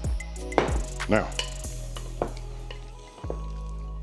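Wooden spoon turning seasoned raw chicken thighs in a glass bowl, with a few light knocks and scrapes, under steady background music.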